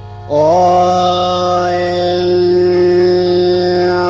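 A male mor lam singer opens the lam with a long held 'โอ้' (oh) on one steady note, rising slightly into it about a third of a second in, over a steady low drone accompaniment.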